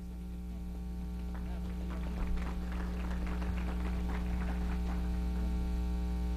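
Loud, steady electrical mains hum with a ladder of overtones. Light, scattered hand clapping from a few people runs over it from about one to five seconds in.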